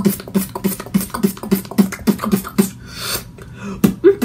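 Beatboxing in a 'moaning beatbox' style: a steady mouth-drum pattern of about three sharp strokes a second, with short low vocal notes between the beats and a longer hiss near the end.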